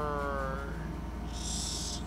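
A man's voice holding one drawn-out vowel, falling slightly in pitch, for well under a second, then a short hissing breath or 's' sound near the end, over a steady low electrical hum.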